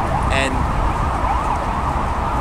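Emergency-vehicle siren in city traffic, its pitch sweeping quickly up and down over and over, over a steady low rumble of traffic.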